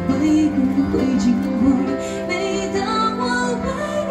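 A woman singing a ballad live into a handheld microphone, her melody wavering and gliding between held notes, over a steady instrumental accompaniment.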